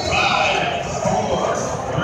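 Spectators' voices and chatter in a large indoor arena crowd.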